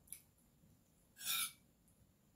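Spoon and fork working on a plate of rice: a light click just after the start, then one short scrape about a second and a quarter in.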